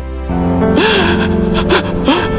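Film soundtrack music with held notes under a man weeping, with a sharp gasping sob about a second in and another short cry near the end.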